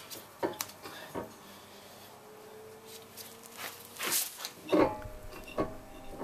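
A new brake disc being fitted onto the car's hub over the wheel studs: a few light metal knocks and clinks, with a short scraping rustle about four seconds in.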